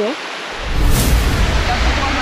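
Steady rush of a small waterfall pouring into a pool, with a deep rumble on the microphone starting about half a second in and a brief hissing burst about a second in.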